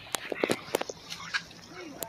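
Scattered light clicks and taps, with a short low murmur from a person's voice near the end.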